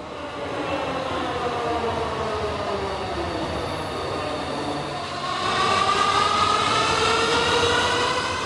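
Dhaka Metro Rail electric train with its motor whine falling in pitch as it slows. From about five seconds in the whine rises in pitch and grows louder as the train pulls away.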